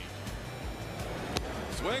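Ballpark crowd noise under background music, with one sharp pop about one and a half seconds in: a pitch smacking into the catcher's mitt on a swing-and-miss strikeout.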